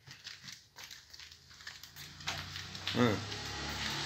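Handling noise from a phone being carried while walking: soft scattered rustles and clicks. About halfway through, a steady hiss of background noise rises, and a short voiced "ah" comes near the end.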